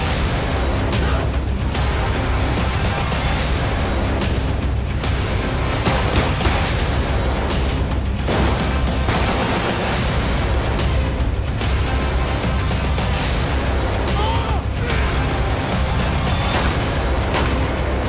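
Loud, dense trailer music with a heavy low end, punctuated several times by sharp booming hits and action sound effects such as gunfire and impacts.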